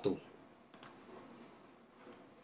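A single sharp click a little under a second in, from the computer being worked to change the slide, over faint room tone.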